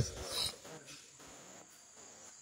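A man's voice trailing off with a short breath, then near-quiet room tone with a faint steady high-pitched whine.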